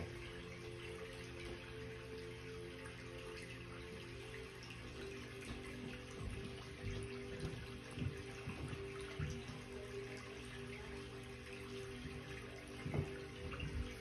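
Soft, slow background music of long held tones over a steady hiss like running water, with a few faint low thumps.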